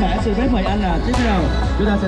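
Loud music with a singing voice over a steady bass, played through the festival's sound system, with a sharp percussive hit about a second in.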